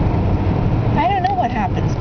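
Steady low rumble of car road and engine noise heard inside the car's cabin, with a woman's voice briefly about a second in.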